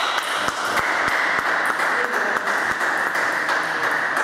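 Irregular light taps and pings of a table tennis ball bouncing on the table and parquet floor, over a steady hiss.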